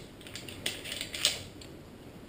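Metal climbing hardware clicking and clinking as a carabiner and Grigri belay device are handled and fitted at a harness: a few light metallic clicks, the sharpest about a second in.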